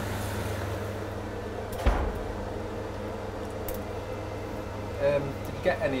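A single sharp knock of kitchen cookware about two seconds in, with a few faint clinks later, over a steady low hum.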